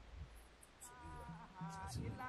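A faint, high, wavering pitched tone with overtones fades in about a second in: the opening of a sung chant.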